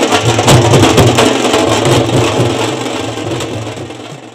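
Loud music with a pounding drum beat from a truck-mounted loudspeaker system, fading out near the end.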